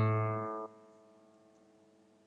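A guitar's open A string plucked once, the low A root note ringing out, then damped about half a second in, leaving a faint ring that dies away.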